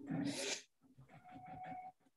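A short laugh, then a domestic sewing machine running faintly from about a second in: a steady motor whine under rapid stitching taps.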